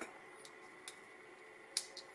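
Small plastic and metal model parts clicking as a gear is pressed by hand into the landing-gear motor housing of a die-cast model aircraft wing: two faint ticks, then a sharper click near the end.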